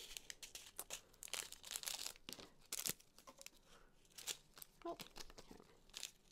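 Faint crinkling and rustling of small plastic zip-top baggies being handled, with scattered light clicks and taps.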